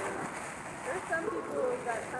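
Indistinct voices talking in the background, with no clear words.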